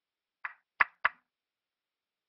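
Three quick, sharp knocks on or against the speaker's microphone as he handles it while turning his volume up, the second knock the loudest. The audio is dead silent around them.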